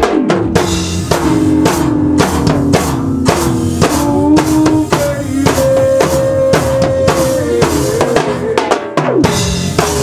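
A live go-go band playing: drum kit and percussion keep a steady, dense beat of kick, snare and rimshot under held, sliding melody notes.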